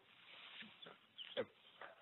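Near silence in a hesitation pause, with a few faint breath and mouth noises from the presenter.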